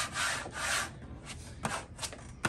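A plastic wallpaper smoother rubbed over vinyl wallpaper in three quick hissing strokes in the first second, pressing out air pockets so the cut line stays straight. Then two light ticks.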